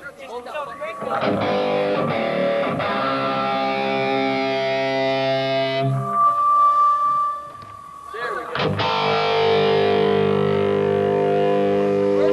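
Distorted electric guitar played through an amplifier during a soundcheck: strummed chords left to ring out, then a single high note held for about a second and a half, a short drop, and another chord ringing on near the end.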